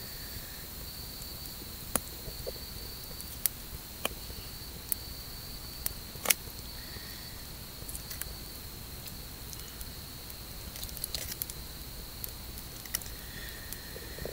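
Wood campfire crackling, with sharp pops every second or two, over a steady high chirring of night insects.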